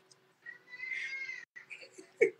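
A young child's drawn-out wail, heard faintly over a phone call: one high, slightly arching cry lasting about a second.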